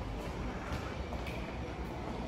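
Steady low background noise of a covered bus-station walkway: a faint even rumble and hiss with no distinct events.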